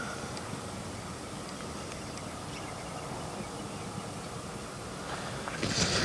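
Steady outdoor background noise with faint, soft footfalls of a horse trotting on sand arena footing. A brief hissy burst comes near the end.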